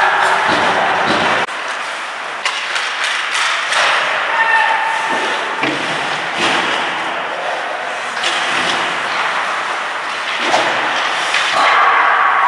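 Ice hockey play heard on the rink: repeated sharp knocks of sticks and puck over a steady scraping hiss of skates on ice, with players' shouts mixed in.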